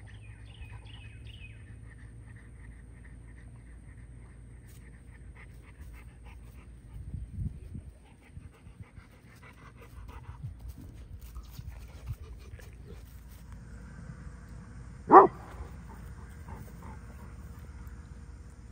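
Dog panting, with one short, loud bark about fifteen seconds in.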